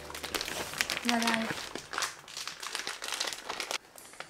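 Crinkling and rustling handling noise with many small sharp crackles, and a person's short laugh about a second in.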